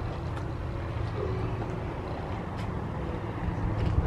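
A motor or engine running with a steady low hum, heard under outdoor background noise.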